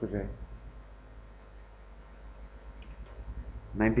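A quick run of three or four computer keyboard key clicks about three seconds in, typing in a value. A low steady mains-type hum from the recording runs beneath.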